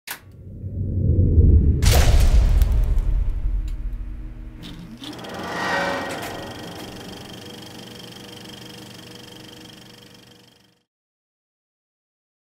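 Designed sound effects for an animated logo intro: a deep rumble swells up, a sharp hit lands about two seconds in, a second hit and a rising whoosh come around five to six seconds, and a held ringing tone fades out about eleven seconds in.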